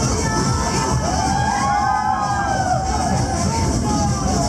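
Carnival parade crowd shouting and cheering, many voices overlapping, over loud music.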